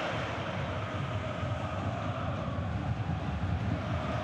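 Steady crowd noise from a large football stadium crowd, an even wash of sound with no single voice standing out.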